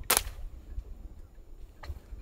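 A pump-action tranquilizer dart gun firing once: a single sharp pop just after the start, with a faint click near the end.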